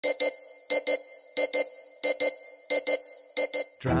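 Electronic double beeps repeating at an even pace, six pairs about two-thirds of a second apart, each beep short with a clean, steady pitch like an alarm or monitor tone. A man's voice comes in just before the end.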